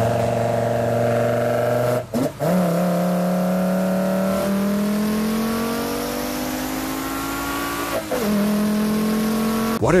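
Engine fitted with individual throttle bodies, heard right at its intake velocity stacks as it is held at steady revs. The revs drop briefly about two seconds in and again about eight seconds in, each time coming back to a higher held pitch, with a slow climb in between.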